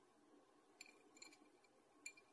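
Faint clicks and light clinks with a short ring, a few in quick succession about a second in, as a caramel-coated fried sweet potato piece is dipped into a glass of ice water.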